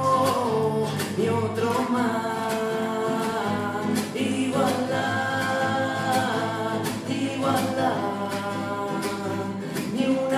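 A man singing long held notes over a strummed classical guitar.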